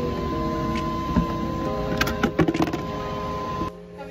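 A steady mechanical hum with a thin constant tone, with a cluster of clicks and knocks about halfway through; it cuts off suddenly near the end.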